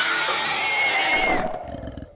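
An animated dragon's long roar, a cartoon sound effect with a wavering pitch, dying away about a second and a half in.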